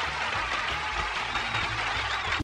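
Cartoon audience applauding, a steady dense clatter of clapping hands.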